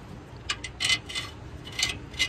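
Light metallic clinks and scrapes from metal parts being handled inside a steel exhaust fan housing: several short, sharp sounds bunched around the first second, and one more near the end.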